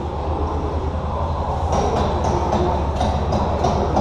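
Steady low rumble of a dark-ride car running along its track, joined about halfway through by a run of sharp knocks, about four a second.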